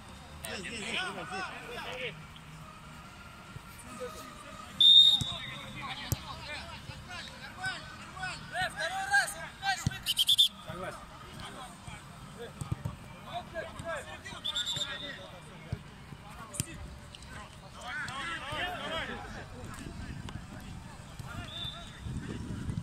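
Football players shouting to each other across the pitch, with the thuds of the ball being kicked. Short high whistle blasts cut through, the loudest about five seconds in and a few shorter ones later.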